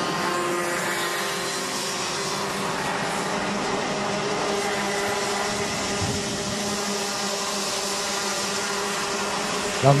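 Several two-stroke Mini Max racing kart engines buzzing at high revs as karts lap the circuit, a steady sound of overlapping engine notes.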